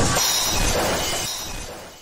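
Storm sound effect of crashing, rushing sea water, a dense noise that fades out near the end.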